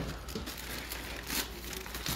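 Cardboard box and plastic wrapping rustling and crinkling as a box is opened and its contents handled, with a few short rustles standing out.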